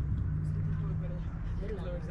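Indistinct voices of people on and around the court, over a steady low rumble and hum.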